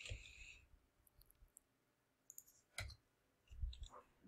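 A few faint clicks from a computer mouse and keyboard during code editing: a soft one at the start, a sharper click nearly three seconds in, and a couple more near the end, with near silence between.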